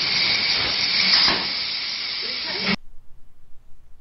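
CNC plasma cutter torch cutting aluminium sheet: a loud, steady hiss that cuts off suddenly about three-quarters of the way through.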